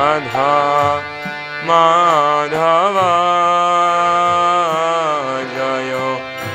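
Devotional kirtan: a male voice sings a slow, drawn-out melody, gliding between notes, over a steady drone, with light mridanga drum strokes underneath.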